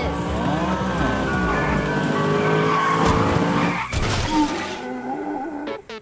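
Cartoon soundtrack music with sound effects laid over it. It is busy and loud for the first four seconds with sliding tones, has a sudden hit about four seconds in, and then thins to a few quieter notes.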